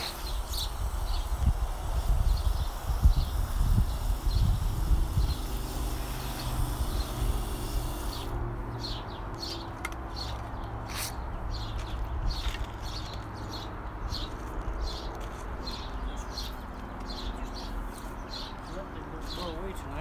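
Garden hose spray nozzle hissing as it waters the transplants, with a low rumble loudest in the first few seconds; the spray cuts off sharply about eight seconds in. After that, birds chirp repeatedly in quick short calls.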